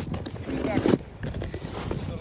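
A person laughing in short bursts, with a few knocks and crunches in packed snow.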